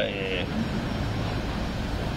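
A steady low rumble and hiss of background noise, with the end of a man's spoken word at the very start.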